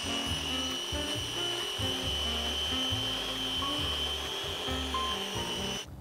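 Small food processor running steadily with a high whine, blending chickpeas, sugar and almond flour into a smooth dough; it cuts off abruptly just before the end. Background music with a bass line plays along.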